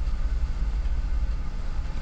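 Steady low background hum in a small studio: a constant rumble with faint hiss, room tone heard in a pause between words.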